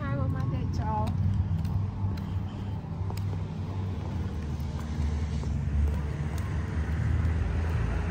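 Low, steady rumble of outdoor street noise, with a brief voice in the first second.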